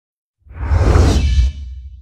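TV channel logo ident: a whoosh sound effect with a deep rumble underneath. It swells in about half a second in and is loudest for about a second, then drops and fades away.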